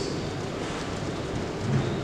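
Steady hiss of a large hall's room tone during a pause in speech, with no distinct event.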